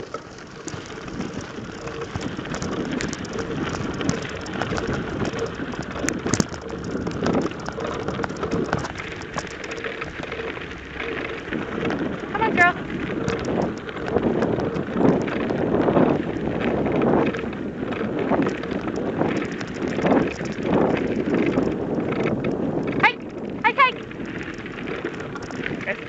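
Wheels and dogs' paws crunching steadily over a gravel road as two harnessed dogs pull a dog-powered rig along at a trot. Brief high squeaky calls come once about halfway through and twice near the end.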